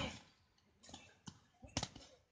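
A few short, sharp slaps of boxing gloves striking during sparring, the loudest just under two seconds in.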